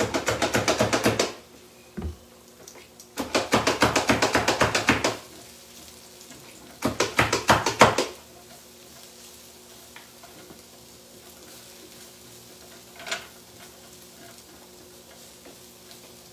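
A utensil scraping and stirring vegetables in a skillet, in three bursts of rapid strokes over the first eight seconds, then one light knock about thirteen seconds in.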